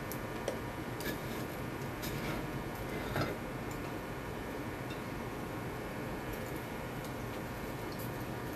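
Faint, irregular clicks and taps of a breath-alcohol simulator's metal head against its cracked glass jar as it is worked loose and lifted off, the loudest click a little after three seconds in.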